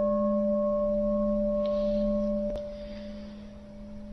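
A Buddhist bowl bell rings on after a strike, a steady low hum with a higher overtone, marking the pause between chanted verses. A light click comes about two and a half seconds in, and the ring then fades away.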